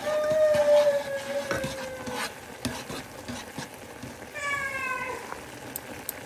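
Metal tongs stirring ramen noodles in a saucepan of boiling water: bubbling, with a few sharp clicks of the tongs against the pan. Two drawn-out, slightly falling high-pitched tones of unclear source are heard, one lasting about two seconds at the start and a shorter one about four and a half seconds in.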